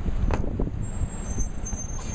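City street traffic noise, a dense low rumble with a few bumps from handling of the phone microphone, and a thin high squeal coming in near the end.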